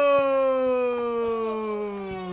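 A man's drawn-out shouted drill command "siaaap" (attention), held as one long call whose pitch slowly falls as it fades.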